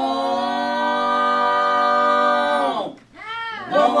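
A cappella vocal group holding one long chord on a vowel in imitation of a train whistle, the pitch sliding down and cutting away near the end. Just before the end comes a short sung 'womp' that rises and falls in pitch.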